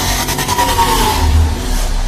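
Logo-intro sound effect: a loud rumbling, hissing blast with a faint whistling tone that wavers through it, cut off abruptly at the end.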